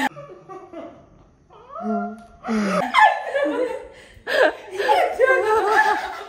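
Women laughing hard, hearty belly laughter in repeated bursts that grows louder from about halfway in.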